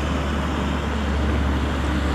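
Steady low engine rumble under an even hiss of road and wind noise as a van approaches on the road.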